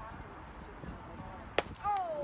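A single sharp crack of a baseball impact, followed a moment later by a voice calling out with a falling pitch.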